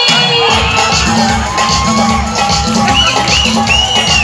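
Loud music with a steady beat fills a crowded hall, with a crowd cheering and shouting over it; a few high-pitched whoops ring out near the end.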